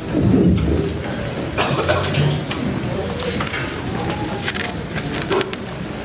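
Audience and performers settling in a large hall: a steady murmur of voices with shuffling and rustling, and a few faint words.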